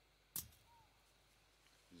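Near silence with one sharp click about a third of a second in, from prospecting gear being handled as a plastic hand suction tube is picked up.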